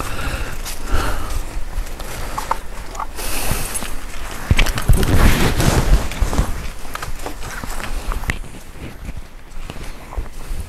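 Footsteps crunching irregularly on a leaf-strewn dirt road, with low rumbling bumps, heaviest about halfway through.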